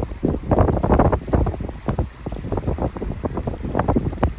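Wind buffeting the microphone in loud, irregular gusts, with small waves of the incoming tide washing over flat sand beneath it.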